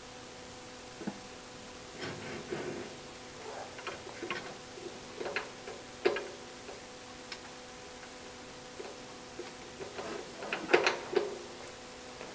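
Small metal clicks, taps and scrapes of a Marelli ignition distributor being lifted, turned one gear tooth and seated back into a Porsche flat-six's crankcase by hand: scattered light handling noises, with a sharper knock about six seconds in and a quick cluster near the end. A faint steady hum runs underneath.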